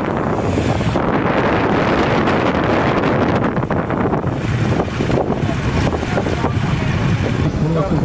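Several motorcycle engines running as BMW police motorcycles pull away one after another, with wind buffeting the microphone.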